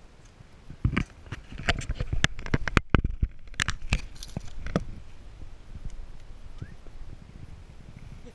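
A quick run of sharp, irregular knocks and clatters, densest in the first half and thinning out later, as a freshly caught blue peacock bass is unhooked and handled in the boat.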